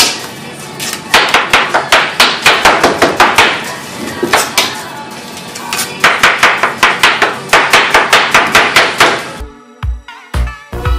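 Knife chopping watermelon on a plastic cutting board in rapid strokes, about four or five a second, with a lull around the middle. Near the end the chopping cuts off and music with a beat takes over.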